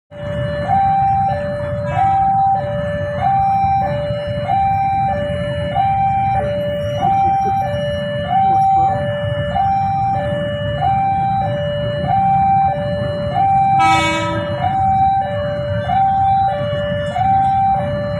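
Railway level-crossing warning alarm sounding a steady two-tone signal, switching between a lower and a higher note about every two-thirds of a second, the sign that a train is approaching and the barrier is down. A low rumble runs underneath, and a short horn beep sounds about three-quarters of the way through.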